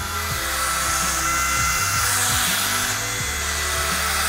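Wall-climbing RC toy car's suction fan running with a steady high whine and rushing air, the suction holding the car to the wall as it drives. The car is noisy.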